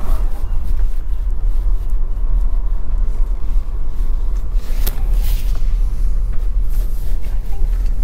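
Steady low rumble inside the cabin of a slow-moving Tesla Model Y, with no engine note since the car is electric: tyre and road noise. A brief click about five seconds in.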